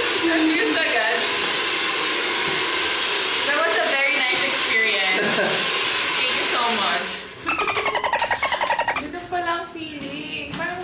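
Handheld hair dryer blowing steadily, with voices and laughter over it. The dryer cuts off about seven seconds in, followed by a short burst of fast, even pulsing and then speech.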